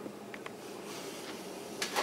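Quiet room tone with two faint ticks about a third of a second in and a short, sharper click near the end, from small handling sounds at the workbench.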